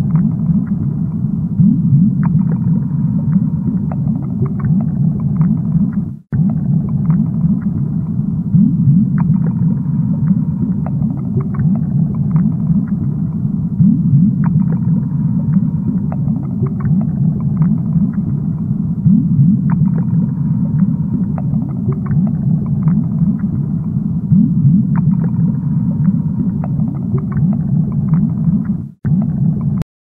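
A steady low rumble of bubbling water with faint ticks, as in a fish tank. It cuts out abruptly for an instant twice, about six seconds in and near the end.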